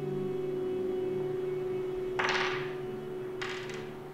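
Soft piano film score: a chord held and slowly dying away. Two short rustling noises come in about two seconds in and again near the end.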